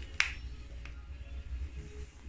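A single sharp click from the runner-cutting station's control box as the station is switched to ready, followed by a fainter click, over a low rumble.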